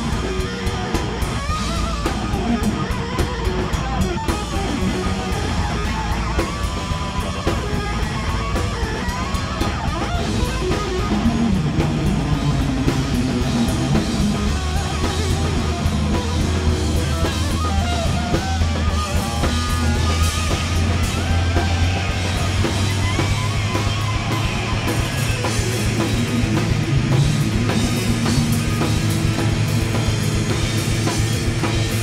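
Live heavy rock band playing: distorted electric guitar, electric bass and drum kit. From about halfway through the bass holds a long, low note under the guitar and drums.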